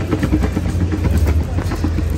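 Small plastic wheels of a toddler's ride-on balance bike rolling over concrete paving tiles: a steady low rumble with a dense rattle of small clicks.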